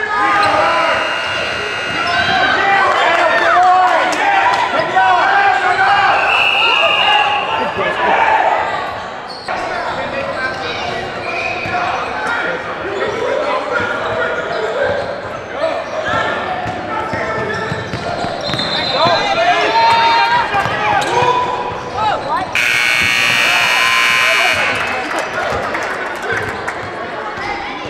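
Gym noise at a youth basketball game: shouting and cheering voices with a basketball bouncing on the hardwood, echoing in a large hall. Near the end a gym scoreboard horn sounds once for about three seconds.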